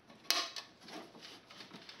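Vintage wooden tube caddy being handled, its hinged sections moving: one sharp clack about a third of a second in, followed by a few lighter knocks.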